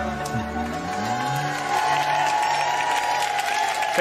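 The closing bars of a song: a man singing into a microphone over a band and choir. It ends on a long held note in the last couple of seconds.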